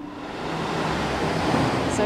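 A steady rushing noise that swells over the first second or so and then holds.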